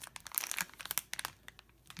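Foil packaging crinkling as it is handled in the hands: a quick run of sharp, irregular crackles that thin out after about a second and a half.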